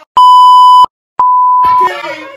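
Two edited-in censor bleeps, each a steady high beep tone of under a second, separated by a moment of dead silence. The first is louder and harsher. Shouting voices resume just after the second bleep.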